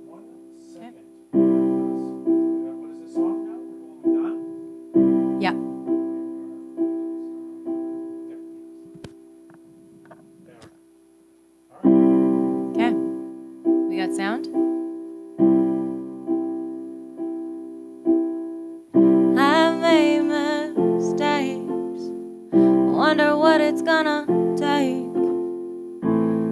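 Yamaha digital keyboard played in a piano voice: slow chords struck about once a second and left to ring, thinning and fading to a lull about eight to twelve seconds in, then coming back loud. From about nineteen seconds a woman's voice comes in over the chords, singing.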